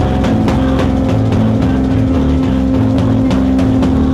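Loud live rock band: amplified guitars hold a droning chord over drums, with regular hits about four a second.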